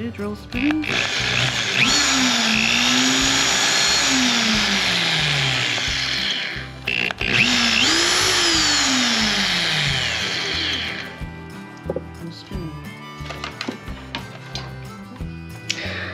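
Corded electric drill run twice. Each time its motor whirs up to speed, then the pitch slides down as it coasts after the trigger is let go. Both runs come in the first two-thirds, and the rest is quieter.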